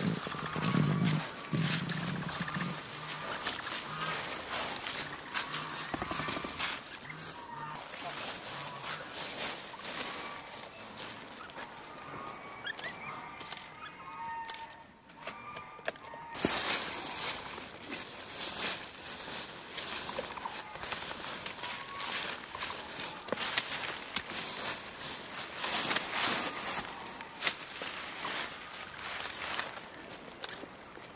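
Dry fallen leaves crunching and rustling under capybaras' feet, with twigs being dragged and swung through them: a dense run of small crackles, busiest in the second half.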